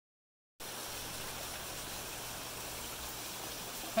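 Steady rush of water from a small waterfall spilling over rocks, starting about half a second in.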